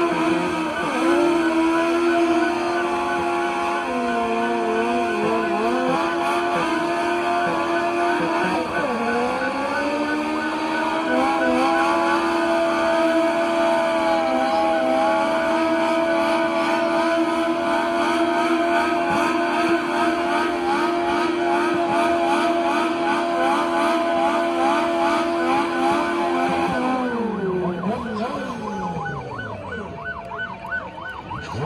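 A car doing a burnout: its engine held at high, steady revs over the hiss of spinning tyres. The revs dip briefly about nine seconds in and come back up, then fall away near the end as the burnout stops.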